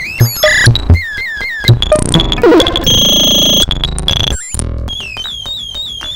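A 1978 Serge Paperface modular synthesizer patch, run through its VCFQ filter and WAD analog delay, plays a stream of short falling chirps over low thumps. A steady high tone sounds about halfway through. After a brief break comes a quieter run of falling chirps, about three a second, while a knob on the panel is being turned.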